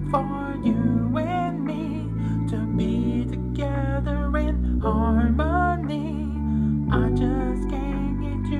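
Music: a produced song with sustained bass notes changing every second or two and a sung melody line over them.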